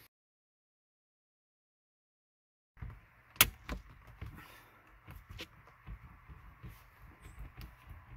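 Driver's airbag module of a 2013 Ford Escape snapping into the steering wheel hub. After a few seconds of silence there is one sharp click about three and a half seconds in as its pins latch into the hooks. Softer knocks and handling noise follow as hands press on the airbag cover and wheel.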